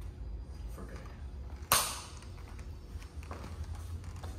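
A single sharp smack about two seconds in, over a low steady hum.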